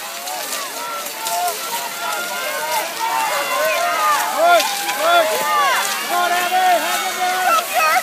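Several spectators shouting and cheering at once, many voices overlapping. Beneath them is the scrape and clatter of skis and poles on snow as a big pack of skate skiers passes close by, with scattered sharp clicks.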